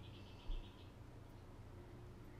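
Low steady hum of a car's engine and tyres heard from inside the cabin, with a brief high bird trill of rapid repeated notes outside in the first second. A single low thump comes about half a second in.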